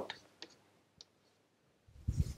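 Two faint clicks of chalk tapping on a blackboard while writing, otherwise near silence.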